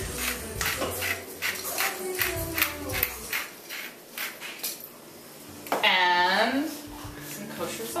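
Hand-twisted stainless pepper mill grinding peppercorns: a fast run of crunchy clicks, about four or five a second, for the first three seconds or so, thinning out after that. About six seconds in, a person's voice calls out loudly for about a second.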